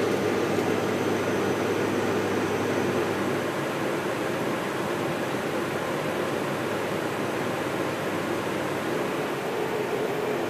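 Steady rushing cabin noise of a Canadair Regional Jet in flight, from airflow and engines, with a faint low hum that fades out about three seconds in.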